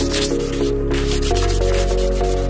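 Hand sanding of weathered wooden trailer deck boards with sandpaper: a run of quick back-and-forth scraping strokes, over background music.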